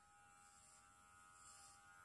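Electric hair clippers running with a faint, steady buzz as they cut a child's hair.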